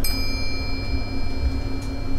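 A single bell-like chime, struck once, ringing with a clear high tone that slowly fades over about two seconds.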